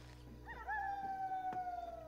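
A single long howl of a wild canid, starting about half a second in with a brief wavering rise, then held and slowly falling in pitch.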